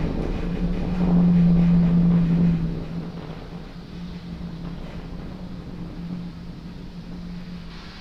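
Falcon 9 rocket ascent audio on the launch feed: a steady low drone under a rushing noise, louder for the first couple of seconds, then dropping to a lower, even level.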